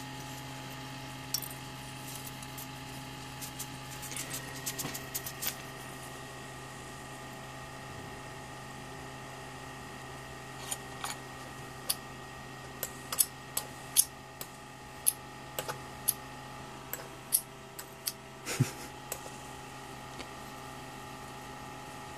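ZVS-driven flyback transformer running with a steady hum and whining tones, while high-voltage arcs on a bulb's glass snap irregularly. The snaps come as about a dozen sharp cracks in the second half.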